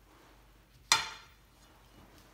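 A single sharp clink of a hard kitchen object being handled, about a second in, with a short ring dying away after it.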